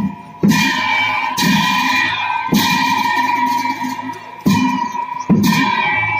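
Music for a chham masked dance: cymbals clashing with drum beats, about five strikes at uneven spacing, each leaving a long ringing wash.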